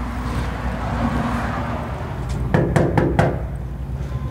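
Knocking on an apartment front door: about four quick raps in a row, a little past halfway.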